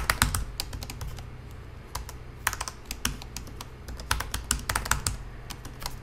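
Typing on a computer keyboard: quick runs of keystroke clicks with short pauses between them.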